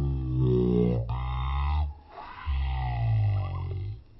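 Edited-in dark sound effect: two long, deep pitched tones with heavy bass, each about one and a half to two seconds, with a short break between them.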